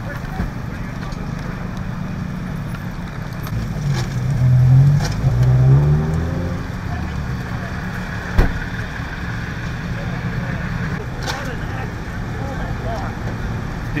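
Vehicle engines running with a steady low rumble. Between about four and six seconds one engine grows louder, rising and then falling in pitch. A single sharp knock comes a little after eight seconds.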